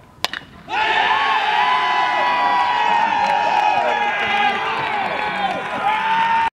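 A single sharp crack of a bat striking a baseball, then, under a second later, a crowd cheering and shouting.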